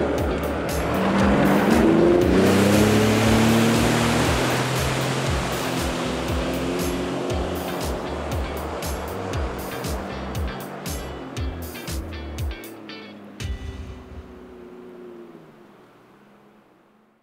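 Sea-Doo GTI personal watercraft engine revving up and pulling away, its pitch rising about a second in, with a hiss of churned water that slowly fades. Under it runs background music with a steady beat, and everything fades out at the end.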